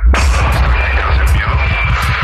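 Dark psytrance music: after a brief break the full mix comes back in at once with a hard hit, then dense bass and fast, driving low pulses under steady high synth tones.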